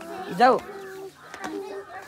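Speech only: a voice says a short word in Nepali, followed by quieter talk.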